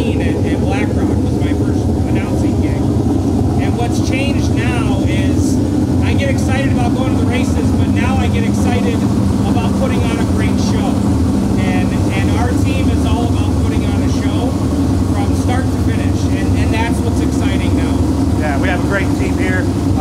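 A man talking over a steady, unbroken low engine drone.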